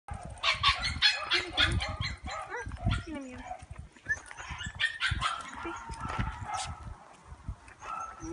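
A dog barking in quick runs of short barks, densest in the first two seconds and more scattered after.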